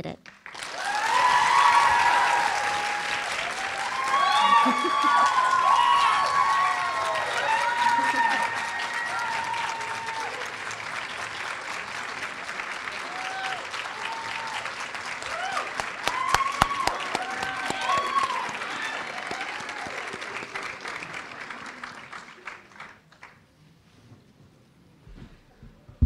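A large auditorium audience applauding and cheering, with many voices whooping over the clapping in the first ten seconds and again around sixteen seconds in. The applause is strongest at the start and fades out over the last few seconds.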